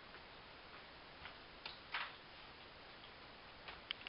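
A few faint, irregular footsteps on a hard floor over quiet room hiss.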